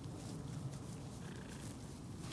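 Shetland ponies grazing close by, tearing and munching grass, over a low steady rumble.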